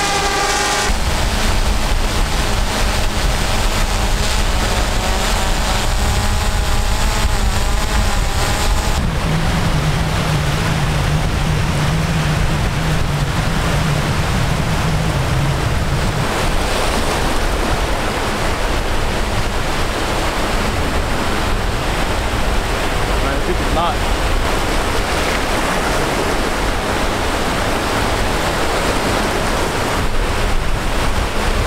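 Whine of a Swellpro fishing drone's propellers, wavering up and down in pitch for the first several seconds as it carries a bait out. After that, breaking surf and wind noise on the microphone.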